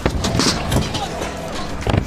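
Stunt scooter wheels rolling on a concrete ramp, with a sharp knock right at the start and another near the end, over background music.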